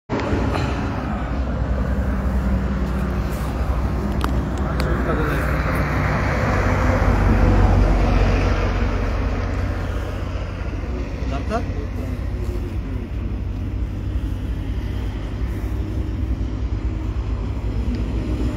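Highway traffic: a steady low rumble of road vehicles, swelling as one passes close about seven or eight seconds in and then fading, with indistinct voices underneath.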